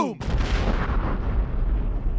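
Explosion sound effect right after a shouted "boom": a sudden blast whose hiss fades away while a deep low rumble holds for about two seconds.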